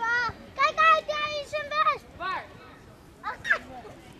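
Young children's high-pitched voices calling out on a football pitch: a run of short calls in the first two seconds, then two more shorter calls before the end.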